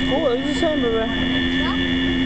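Mark Twain Riverboat's steam whistle blowing one long, steady chord of several notes, with a child's voice briefly over it in the first second.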